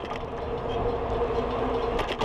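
Riding noise picked up by a camera on a moving bicycle: tyres rolling on asphalt and wind on the microphone, with a steady hum and low rumble.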